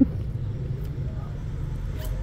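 Steady low rumble of traffic-like background noise, with no distinct event standing out.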